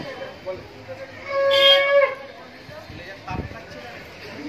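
A conch shell (shankha) blown once in a single steady note lasting about a second, starting just over a second in, sounded as part of welcoming the new bride. Chatter runs beneath it, and there is a dull thump near the end.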